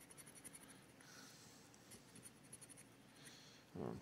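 Faint rasping of the latex coating on a scratch-off lottery ticket being scratched away with a scratcher, in a few short spells, as the bonus spots are uncovered.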